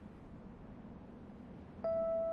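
A quiet pause in soundtrack music with only a faint low hum, then near the end a single struck, bell-like mallet-percussion note that rings on.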